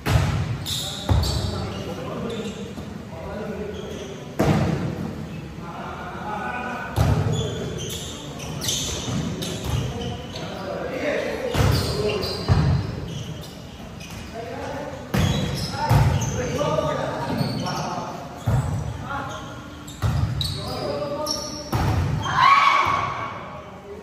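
Volleyball rally: about a dozen sharp smacks of hands and forearms striking the ball, one to three seconds apart, with players shouting between hits, all echoing in a large gym hall.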